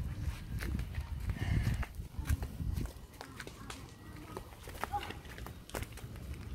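Footsteps hopping on a concrete pavement: irregular light knocks and scuffs, over a low rumble of the phone being carried.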